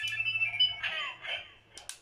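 A Kamen Rider Kuuga Ridewatch toy plays thin electronic tones from its small speaker. Near the end come two sharp plastic clicks as its bezel is turned.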